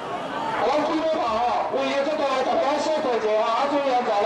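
Loud men's voices talking and calling out over a crowd, several overlapping.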